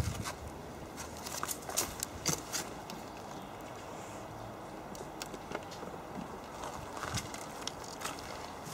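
Irregular light footsteps and small handling clicks over a faint, steady outdoor background hiss.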